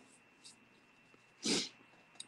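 A single short, sharp breath through the nose about one and a half seconds in, with a faint click just before it; otherwise the room is quiet.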